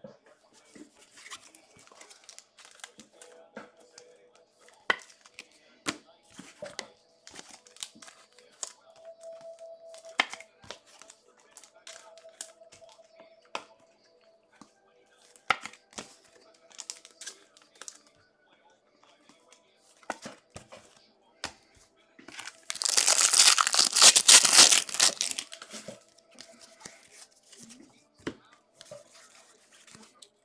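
Trading-card pack wrapper being torn open: one loud ripping tear lasting about three seconds, about three-quarters of the way in, among light crinkling of wrappers and handling of cards.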